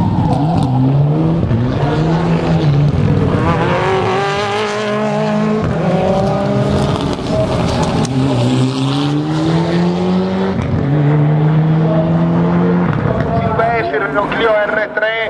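Mini rally car's engine driven hard through the gears: its pitch climbs, drops sharply at an upshift about six seconds in, climbs again and drops at another shift a few seconds later, then holds steady.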